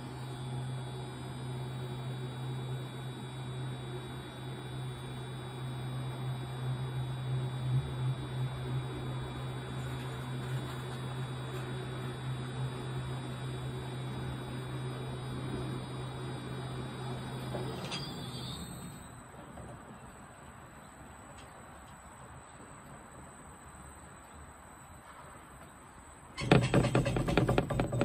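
Electric target carrier running along its rail, bringing the paper target in from the far end of the range: a steady motor hum with a high whine. It stops about 18 seconds in, the whine sliding down as it halts; louder sounds start near the end.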